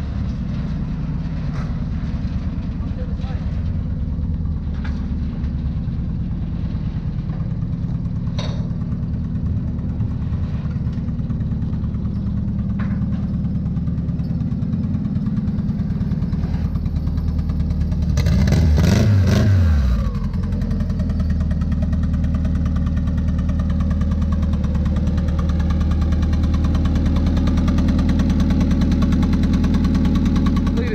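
Turbocharged Honda Civic hatchback engine idling steadily, with one rev about 18 seconds in that rises and falls back to idle.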